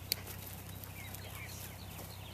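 Small birds chirping in short, repeated rising and falling notes over a steady low hum, with one sharp knock just after the start.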